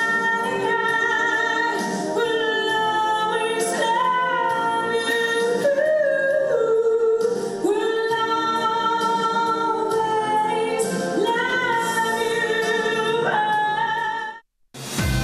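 A woman singing live into a handheld microphone, amplified in a hall, holding long notes with vibrato over musical accompaniment; near the end one note slides sharply upward.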